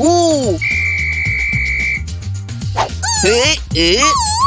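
A whistle blown in one long, steady blast lasting about a second and a half, over background music. Cartoon voices exclaim just before the blast and again near the end.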